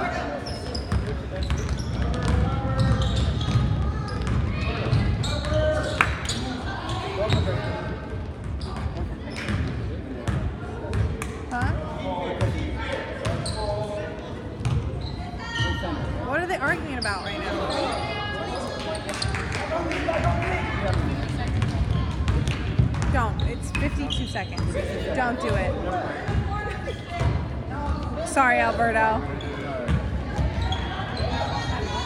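A basketball bouncing on a hardwood gym court during play, with repeated sharp bounces throughout. Indistinct voices of players and spectators carry in the gym.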